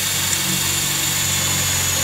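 Makita 18 V cordless drill running steadily with a high whine, boring a pilot hole through iron sheet.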